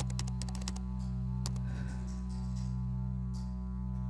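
Computer keyboard typing clicks, a quick run in the first second and a single click about a second and a half in, over a steady low drone of background music.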